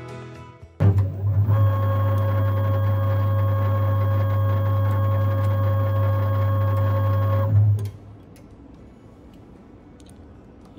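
Huaming SHM-D on-load tap changer motor drive unit making one tap-change run after its control button is pressed: the motor starts with a jolt about a second in, runs with a steady hum for nearly seven seconds, and stops abruptly.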